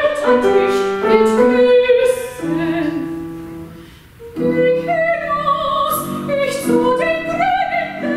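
Soprano singing an art song with grand piano accompaniment. The music thins almost to silence about four seconds in, then voice and piano come back in.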